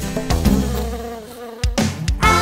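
Cartoon bee-swarm buzzing sound effect that fades away over about a second and a half, followed by a brief sharp sound near the end.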